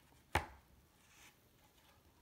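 A single sharp knock of a thick cardboard board-book page against the book and wooden tabletop about a third of a second in, followed by faint handling of the page as it is turned.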